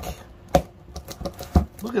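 A knife poking and cutting through thick clear packing tape on a cardboard box, with two sharp clicks about a second apart and a few smaller ticks between.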